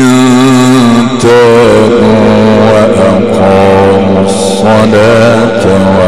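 A man chanting the Quran in the melodic mujawwad style, holding long ornamented notes with a wavering pitch that step from one note to the next. The voice is amplified through a microphone and a PA loudspeaker.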